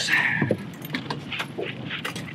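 Light metallic clicking and rattling as a freshly landed lake trout is handled in a landing net on an aluminum tread-plate boat deck, with the net frame and tackle knocking together.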